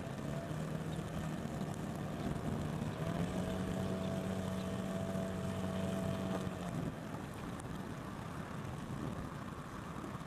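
Small motor boat's engine running at low revs, then revving up about three seconds in, holding a steady higher note, and dropping back to a lower note about seven seconds in.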